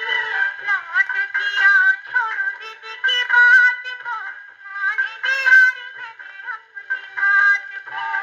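A 78 rpm shellac film-song record playing on a hand-cranked acoustic gramophone: a sliding, ornamented melody with thin, narrow-band sound and almost no bass.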